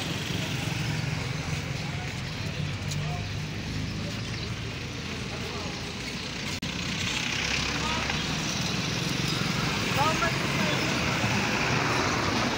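Busy street traffic: motorbike and car engines running and passing, over a steady road noise, with a few voices in the background.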